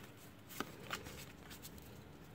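Pokémon trading cards sliding against each other as they are shuffled through by hand, quiet, with two short sharp card flicks about half a second and a second in.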